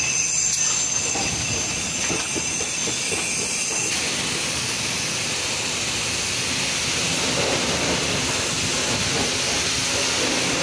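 Self-serve car wash high-pressure wand spraying a steady jet of water onto a truck's tyre and wheel: a continuous hiss.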